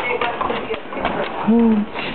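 Two dogs play-fighting on a wooden floor: scuffling and clicking, with one short rising-and-falling vocal sound about a second and a half in.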